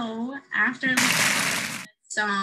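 A woman speaking in short bits, with a hiss lasting nearly a second in the second half that cuts off suddenly.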